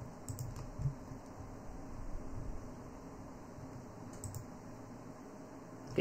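Faint, scattered clicks of a computer keyboard and mouse: a cluster just after the start and a couple more about four seconds in.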